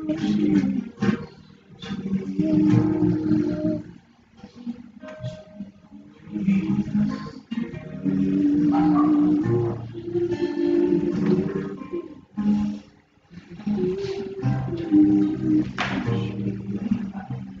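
Acoustic guitar strummed, playing chords in phrases broken by short pauses.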